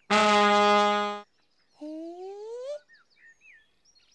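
Background music: a loud brass note held steady for about a second, then after a short pause a smooth upward slide in pitch lasting about a second.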